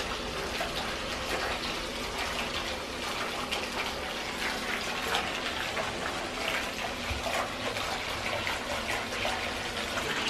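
Bath tap running, a steady stream of water pouring into a filling bathtub.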